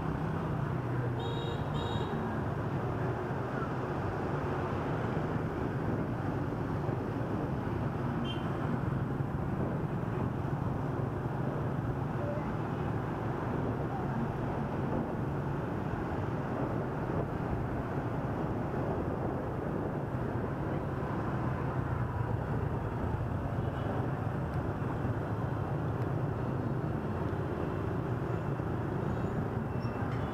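Riding a motorbike through heavy street traffic: a steady engine hum and road and wind noise with the surrounding traffic, broken by short high beeps about a second in and near the end.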